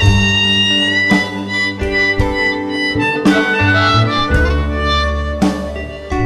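A blues band playing an instrumental passage led by a harmonica cupped against the microphone, its notes held and changing about once a second, over a plucked double bass and acoustic guitar.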